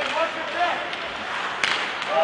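Ice hockey play: voices shouting over the rink's steady noise, with sharp knocks of sticks or puck against the ice and boards, the loudest about a second and a half in.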